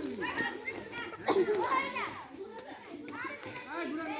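Children's voices chattering and calling out over one another, with a louder call just over a second in.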